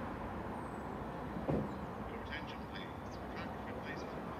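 Steady outdoor rushing noise with a single thump about a second and a half in, then a run of short, high bird chirps from about two seconds in.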